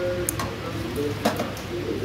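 A metal ladle clinks a few times against a stainless steel food pan as broth is scooped out, over background voices.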